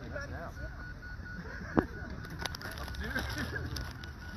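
A beep baseball ball giving its steady run of short, high electronic beeps, under faint distant voices and wind rumble on the microphone. One sharp knock sounds a little under two seconds in.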